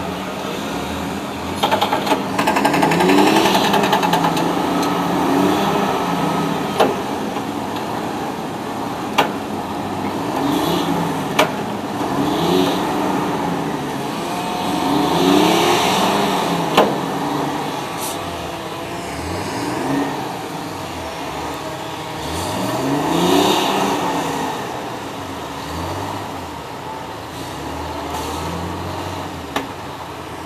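Diesel engine of a crawler-mounted cable logging yarder running under changing load, its pitch rising and falling again and again as the winches are worked. A few sharp clanks come through the engine sound.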